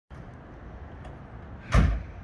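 Low steady background rumble, then a single loud thump near the end.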